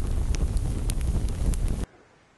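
Whooshing, wind-like noise effect from an animated logo intro, running steadily and then cutting off suddenly near the end.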